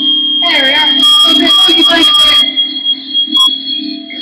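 A steady high-pitched tone rings without a break over a low sustained hum from an amplified electric guitar and microphone rig. A wavering, warbling voice sounds from about half a second in until about two and a half seconds in.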